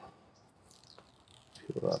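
Faint rustling and light scraping of hands handling a small music player and its cardboard packaging, with a man's voice starting near the end.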